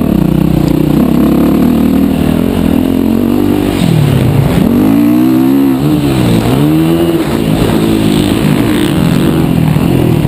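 Motocross dirt bike engine running hard at close range, revving up and down with the throttle; about four seconds in the revs drop and climb back sharply, and again a little later.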